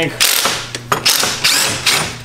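Cordless DeWalt ratchet running in two spells of about a second each, spinning out the intake manifold bolts.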